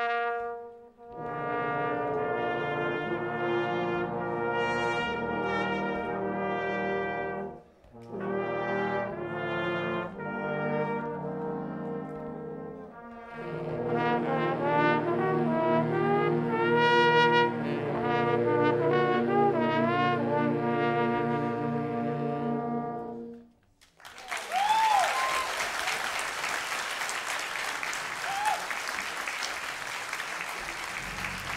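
A school jazz big band's brass and saxophones play held chords in three phrases, the last a long closing chord that cuts off about three-quarters of the way through. Audience applause follows.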